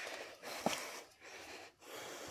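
Faint breathy puffs of a person breathing, in short stretches, with a small knock about two-thirds of a second in.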